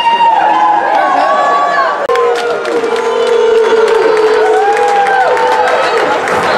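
Crowd of spectators and players cheering, with several long drawn-out shouts overlapping and scattered sharp claps or taps.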